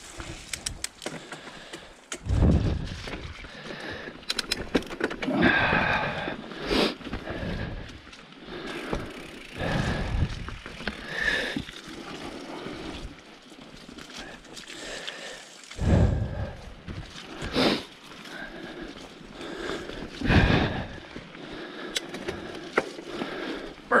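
Mountain bike rolling along a dirt forest singletrack: tyre noise on the dirt and the bike rattling over the trail, with irregular louder bumps throughout.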